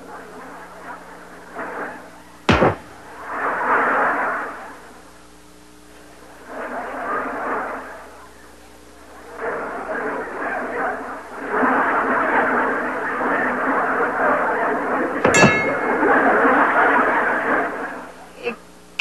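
A large inflatable ball striking something with a sharp smack about two and a half seconds in, and again near the end with a brief ringing clang. Between them, studio audience laughter swells and fades several times, growing longer and louder towards the end.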